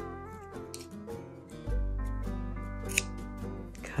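A pair of scissors gives one sharp snip about three seconds in, over steady background music.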